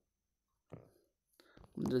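Mostly quiet, with a brief soft vocal sound a little under a second in, then a man begins speaking near the end.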